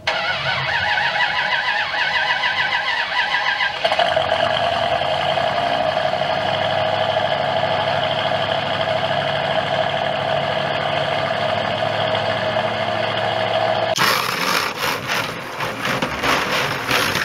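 Car engine sound effect: the engine is cranked and started over the first few seconds, then settles into a steady idle. About two seconds before the end it changes abruptly to a harsher, noisier sound as revving and tyre screech begin for a burnout.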